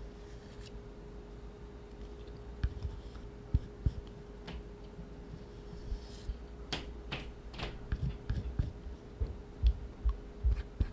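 Low thuds of footsteps from the upstairs neighbours, scattered at first and coming more often near the end, with a few light clicks and scrapes of a metal palette knife working wet oil paint on paper, over a steady faint hum.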